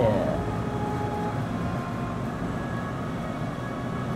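Steady background hum and hiss with a couple of faint steady tones in it; a man's voice trails off at the very start.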